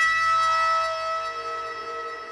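Pedal steel guitar holding a sustained chord, one note sliding down in pitch partway through while the whole chord slowly fades.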